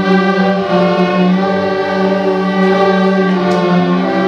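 A student string orchestra of violins and cellos playing long, held notes, with one low note sustained steadily underneath while the notes above change about once a second.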